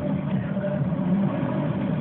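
Shortwave AM broadcast playing through a radio receiver's speaker: narrow-band audio with steady low droning tones over a hiss.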